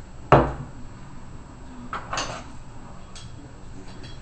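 A single sharp knock about a third of a second in. Around two seconds in comes a short rasp of cloth hockey tape being pulled from its roll and pressed onto a paintball air tank, and a faint click follows near the end.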